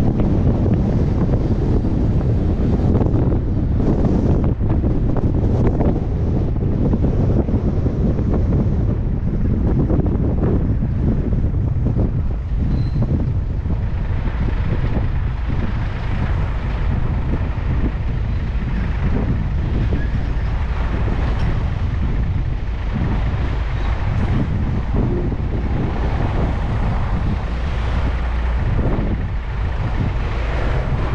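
Steady wind rumble on the microphone of a roof-mounted GoPro, mixed with the running and road noise of the car transporter truck that carries it.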